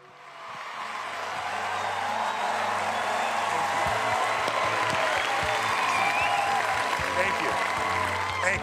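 Large audience applauding and cheering, swelling up over the first two seconds and then holding steady, with scattered shouts and whoops over it and music underneath.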